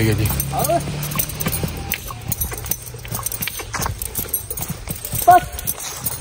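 A horse's hooves stepping on grassy ground as it is worked on a rope, an irregular series of short knocks.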